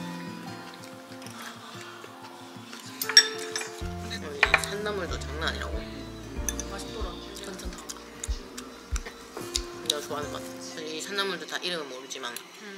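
Background music playing over the clink of metal cutlery on bowls: a stainless spoon and chopsticks knocking against a ceramic soup bowl and a small steel dish, with the sharpest clink about three seconds in.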